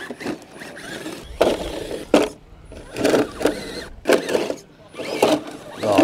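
Electric 1/10-scale RC rock crawler's motor and gearbox whirring in several short bursts as it is driven against rock, with its tyres scrabbling on rock and dirt.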